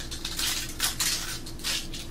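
Caramel rice crisps being bitten and chewed close to the microphone: a quick, uneven run of crisp crunches, the loudest about a second in.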